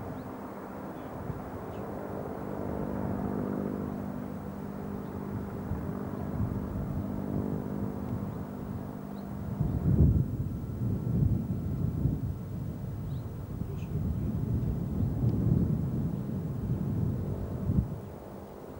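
A steady, low engine drone, fading out about halfway through. After it comes an uneven low rumbling that peaks loudest about ten seconds in.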